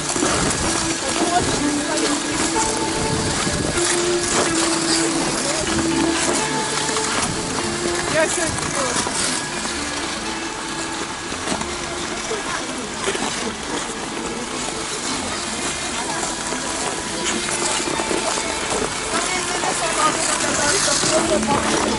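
Busy ice-rink ambience: many skaters' voices chattering, with music playing and the scrape of skate blades on the ice.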